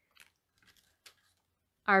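A few faint, brief crinkles and taps from a small clear plastic gift box and a paper piece being handled, followed near the end by a woman starting to speak.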